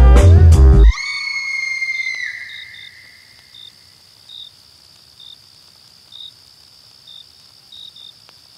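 A hip-hop beat with heavy bass stops abruptly about a second in. A high held tone rings on and fades over the next second or so. Then there are faint, irregularly spaced cricket chirps over a steady hiss.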